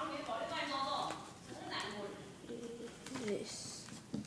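A person's voice, indistinct and unclear in words, with light rustling of the paper plane as it is handled.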